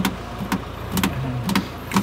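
A vehicle's engine idling with a steady low hum, and sharp clicks about twice a second.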